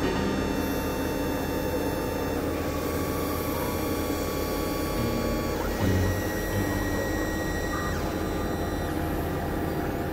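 Experimental electronic synthesizer drones: a dense, buzzing noise bed with several held tones layered over it. The layers shift about two and a half seconds in, and again about six seconds in, when a low drone enters.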